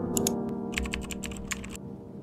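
Computer keyboard typing sound effect: a quick run of keystrokes lasting about a second and a half, over fading piano notes.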